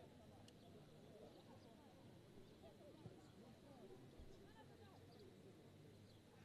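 Near silence: faint outdoor ambience of distant, overlapping voices calling across a sports pitch, with a single faint knock about three seconds in.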